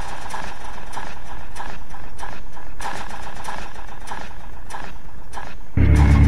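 Industrial noise music: uneven clattering knocks, about two or three a second, over a low steady rumble. A loud, deep synth tone enters near the end.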